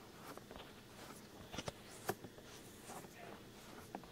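Faint close-up rubbing at the ear of a binaural microphone, in an ASMR ear massage with cleaning solution. Soft crackles are scattered through it, with a few sharper clicks, the loudest about one and a half to two seconds in.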